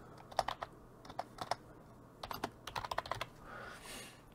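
Keys on a computer keyboard being typed in several quick runs of clicks as a word is entered.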